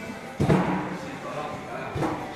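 A single heavy thump about half a second in, amid indistinct voices and background music.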